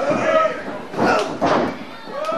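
Two impacts on a wrestling ring, about half a second apart in the second half, as a body hits the canvas. They come over indistinct shouting from the crowd.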